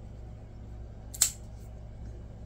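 One sharp click about a second in as a folding knife is handled, over a steady low hum.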